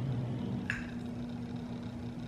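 A fork scraping once on a plate less than a second in, over a steady low hum.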